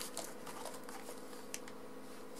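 Quiet room tone with a faint steady hum and a few light clicks.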